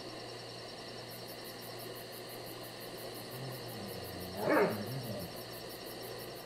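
Steady faint hiss and hum, with one brief, low, rough animal call, a growl or bark, peaking about four and a half seconds in.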